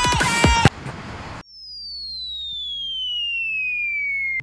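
The tail of an electronic music track cuts off, followed by a brief hiss. Then comes a single pure whistling tone that glides steadily down in pitch and slowly grows louder over about two and a half seconds: an edited falling-whistle sound effect.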